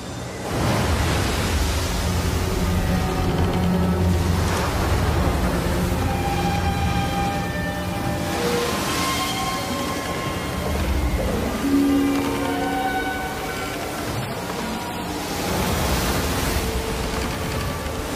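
Storm at sea on a film soundtrack: strong wind and waves crashing in repeated heavy surges, with dramatic music of held notes playing over them.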